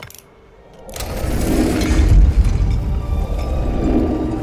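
A small mechanical click as a lock-pick device engages a carved stone lock. About a second later a heavy stone temple door starts moving open with a loud, deep rumble and mechanical clinking, under film score music.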